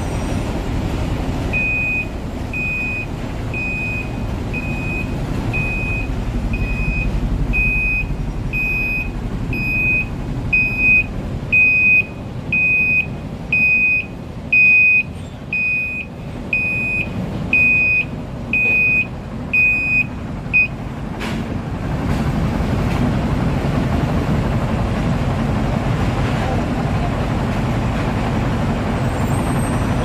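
A dump truck's reversing alarm beeps steadily about once a second for some twenty seconds over the low rumble of heavy diesel machinery. The beeping stops about two-thirds of the way through, and the rumble then grows louder.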